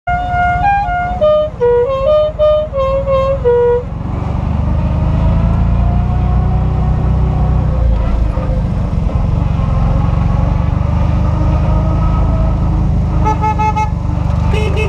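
A musical car horn plays a short tune of about a dozen notes stepping up and down, then gives way to the steady low running of a small Fiat 500 engine driving slowly, heard from inside the car. Near the end a rapid series of horn beeps starts.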